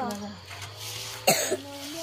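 A single sharp cough about a second in, between bits of a woman's talk.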